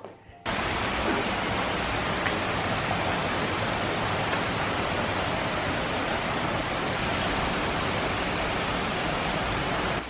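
Heavy rain pouring down in a steady, even hiss, cutting in abruptly about half a second in.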